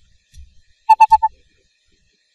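Four short, loud beeps in quick succession about a second in, with a soft low thud just before.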